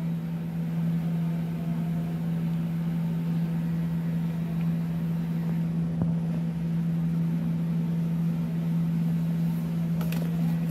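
A steady low-pitched hum, with a faint tap about six seconds in.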